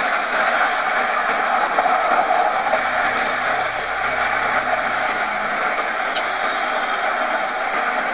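Steady road and engine noise heard inside a car's cabin, an even hiss-like rumble with no breaks.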